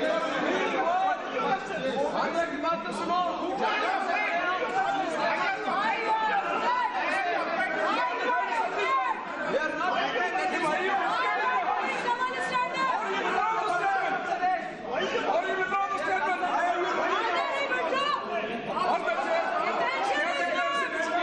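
Many voices talking and shouting over one another at once in a large hall, with no single speaker standing out: the din of a house in uproar.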